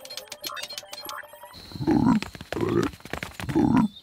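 Cartoon frogs croaking: three low croaks a little under a second apart, after a quick run of clicks.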